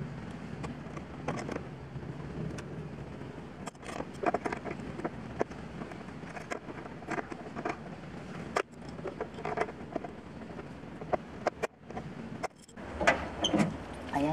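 Irregular metallic clicks and taps of a wrench working the nut on a car battery's hold-down clamp as it is tightened, over a steady low background rumble.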